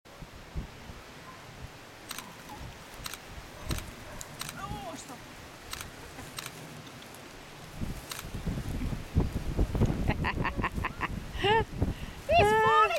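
Border Collie puppy licking and nibbling treats from a hand: small scattered mouth clicks over a quiet background. In the last third there is louder rustling and handling, then a woman laughing in short bursts near the end.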